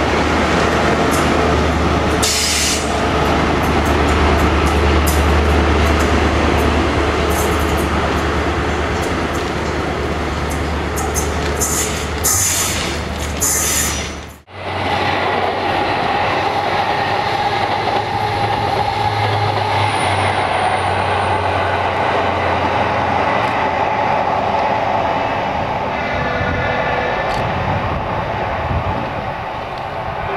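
An InterCity 125 HST train passing at speed, its coaches rolling by with a low drone and scattered clicks from the wheels. After a sudden break about halfway through, another HST is heard approaching: a steady engine note from its diesel power car.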